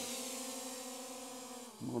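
Ruko F11GIM2 quadcopter drone's propellers humming at a steady pitch, growing fainter as the drone climbs away, with the pitch dipping slightly near the end.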